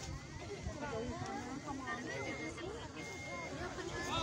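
Indistinct chatter of several people talking at once, with an uneven low rumble of wind buffeting the microphone.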